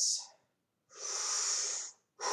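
A person's deep breath drawn in through the mouth, a steady airy rush lasting about a second that starts about a second in. It is a downward, diaphragmatic breath taken for singing, with the shoulders kept still.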